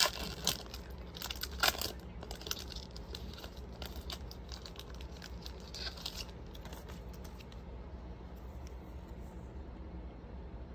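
Trading-card pack wrapper being torn open and crinkled, with scattered crackles and clicks, densest in the first two seconds and again about six seconds in, then quieter handling of the cards.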